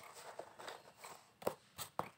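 A few faint, short knocks and taps, the sharpest about a second and a half in.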